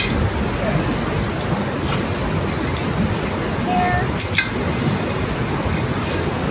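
Steady rushing of a nearby river, with a few sharp metal-on-metal clicks as the cooking grate is set onto the charcoal grill with tongs: once at the start and twice about four seconds in.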